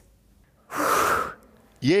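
One short, loud breath, a gasp-like rush of air about half a second long, from a person.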